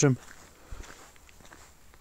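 Faint footsteps on a wet asphalt road, a few soft steps.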